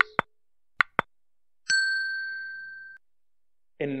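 Subscribe-button animation sound effect: three short sharp clicks in the first second, then a single bright bell ding that rings for over a second and fades away.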